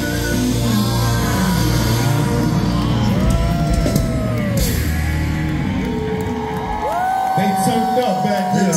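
Loud live hip-hop track over a venue PA with a heavy bass beat, voices singing and yelling along on top. About seven seconds in the beat's bass drops out, leaving the voices.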